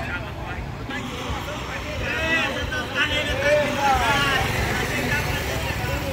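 Street sounds: voices calling out loudly for a few seconds in the middle, over a steady low rumble of motorcycle engines.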